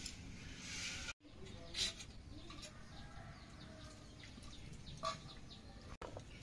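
Birds calling in the background, with short chirps and clucks; the two loudest calls come about 2 s and 5 s in.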